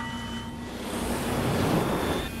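Rising whoosh of a jet airliner passing, swelling to its loudest near the end over a low steady hum. A steady high tone cuts off about half a second in.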